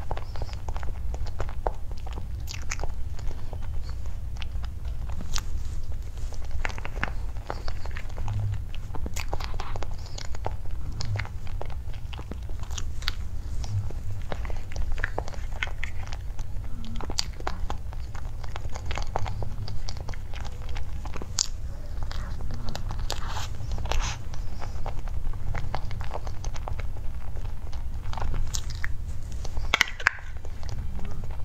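Close-miked eating of a cream mousse cake from a clear plastic box with a metal spoon: many small wet clicks and smacks of mouth and lips as it is chewed, mixed with the spoon scraping and tapping the plastic box, over a steady low hum. The cream inside the cake is still partly frozen.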